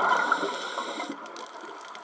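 Scuba exhalation bubbles from a regulator rushing and gurgling loudly past the underwater camera, fading out about a second in and leaving a quieter underwater hiss with faint ticks.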